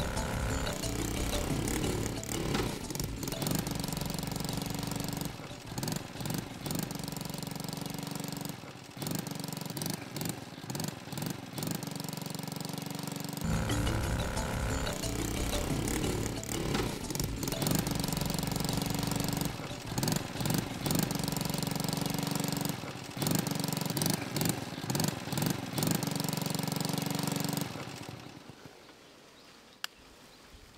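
Small 50cc motorcycle engine running loud, mixed with a looping background music track. Both fade out near the end.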